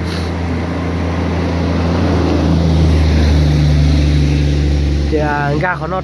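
A truck's engine and tyres as it passes close by, growing louder to a peak about three to four seconds in and then falling away, over a steady low engine hum.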